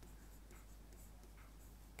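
Faint sound of a stylus writing on an interactive smartboard screen, over near-silent room tone.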